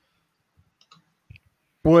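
A few faint, short clicks over a near-silent background, then a man's voice starts near the end.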